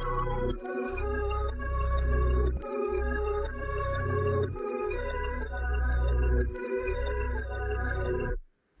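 Playback of a dark experimental music sample loop layered from bells, flute, bass and pad: sustained chords over a bass line that drops out briefly about every two seconds.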